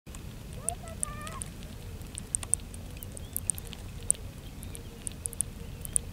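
Chinese mitten crab, held in the hand, making its angry noise: a run of short, sharp, irregular clicks and crackles, several a second. A brief wavering pitched call sounds about a second in, over a low rumble of wind on the microphone.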